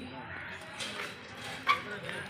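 A dog gives one short, sharp bark near the end, over a low background of outdoor murmur.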